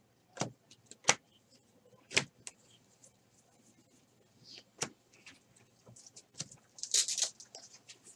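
A stack of 2018 Bowman baseball cards being flipped through by hand: sharp card snaps a few times in the first five seconds, then a quick run of snaps and rustling near the end, over a faint low hum.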